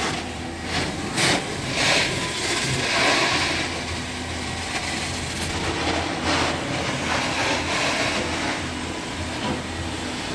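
Truck-mounted hot-water extraction wand (a Zipper carpet wand) sucking air and water out of carpet: a steady rushing hiss over a low hum. It swells several times as the wand is pushed and pulled across the carpet.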